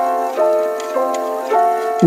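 Background music: a steady run of pitched notes, about two a second, with a light, ticking attack and no bass.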